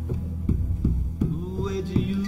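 Slow instrumental new-age music: plucked acoustic guitar notes, about three a second, over a low steady bass tone.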